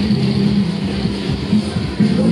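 Loud music over the ride's sound system, holding a long low note, over the rumble of a Sobema Matterhorn ride spinning.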